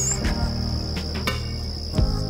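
Crickets trilling as one steady high-pitched tone, over a low steady hum.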